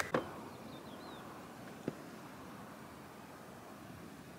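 Faint background ambience: a steady low hiss, with a few faint high chirps about a second in and a single light click near two seconds.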